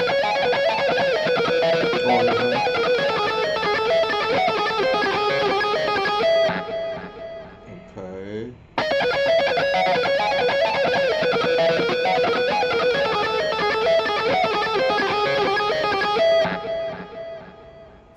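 Electric guitar playing a fast neoclassical shred lick built on a four-note repeating pattern. It is played through twice, with a short break near the middle in which a single note wavers and slides, and the second pass fades out near the end.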